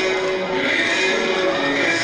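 A man's voice chanting melodically into a microphone, drawing out long held notes that step from one pitch to the next.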